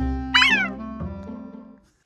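A single short cat meow that rises and then falls, over background music that fades out near the end.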